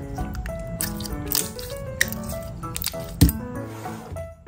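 Background music over the sticky squishing and clicking of clear yellow slime being squeezed and stretched by hand, with a single thump about three seconds in.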